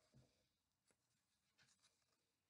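Near silence, with a few faint ticks from hands handling yarn and a popsicle stick on a cardboard loom.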